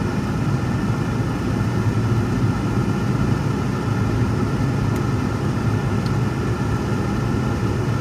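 Steady road noise and engine drone inside the cabin of a moving car: a constant low hum under tyre noise.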